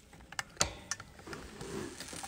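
A handful of short, sharp clicks and taps, the loudest about half a second in: handling noise from the phone as its camera is switched from the face to the table.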